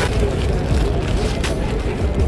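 Steady low rumble of city street traffic, with a short crackle about one and a half seconds in.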